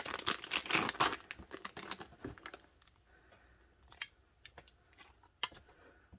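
Clear plastic wrap crinkling as a wax melt in a foil cup is unwrapped by hand, dense for the first two or three seconds, then a few light clicks and rustles as the foil cup is handled.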